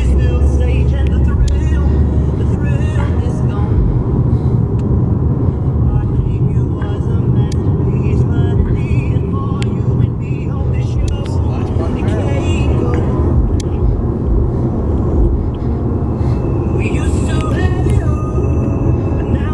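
Steady low road and engine noise inside a moving Chrysler car's cabin, with music and voices playing over it.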